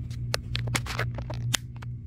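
A steady low machine hum, with a quick run of clicks and scratchy rustles over it in the first second and a half, as a phone is handled.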